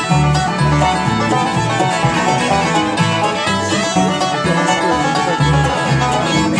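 Live acoustic bluegrass band playing an instrumental passage without singing: banjo, fiddle, mandolin and acoustic guitar over an upright bass walking out steady notes.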